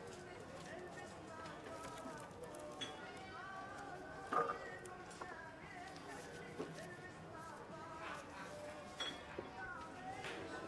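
Background chatter of several voices mixed with music, with a few short sharp knocks, the loudest about halfway through.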